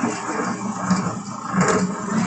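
Food processor motor running steadily, kneading challah dough as it gathers into a ball, with a brief louder noise near the end.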